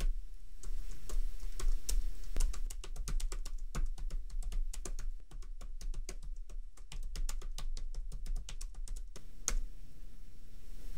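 Typing on a computer keyboard: a fast, irregular run of key clicks that is densest in the middle and stops shortly before the end.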